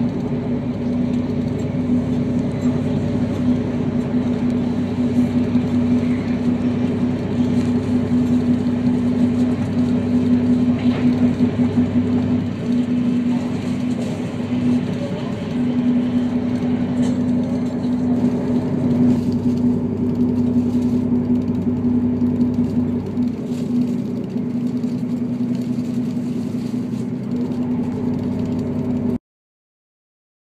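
Diesel passenger railcar running steadily at speed, a constant droning engine tone heard from inside the cabin. It cuts off suddenly near the end.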